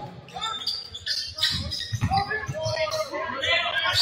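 Basketball bouncing on a hardwood gym court during play, with voices talking in the background.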